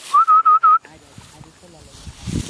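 Four short whistled notes in quick succession, each a single clear tone with a slight upward slide at its start, loud and close.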